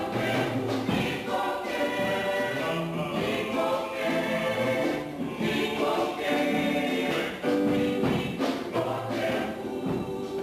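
A choir singing a gospel hymn, many voices in harmony, steady and full throughout.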